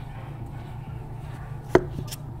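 A single sharp knock near the end, over a steady low hum.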